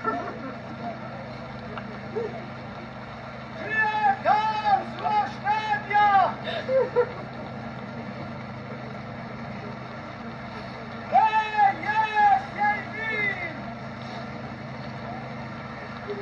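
A man's Albanian funeral lament (vajtim), cried out loud in two bursts of short wailed phrases, each syllable rising and falling in pitch. A steady low hum runs underneath.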